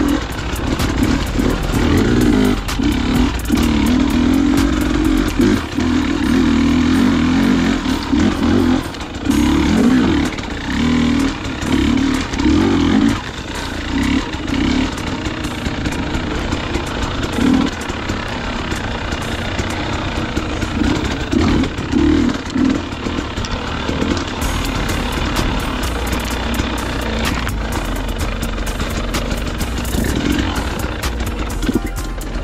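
Dirt bike engine under way on a wooded trail, revving up and dropping off again and again as the throttle is worked. In the second half it runs lower and steadier.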